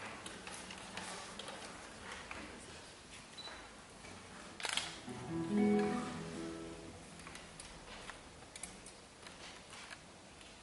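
Nylon-string classical guitar: a sharp click, then a few plucked notes about five seconds in that ring together and fade, with faint scattered clicks around them.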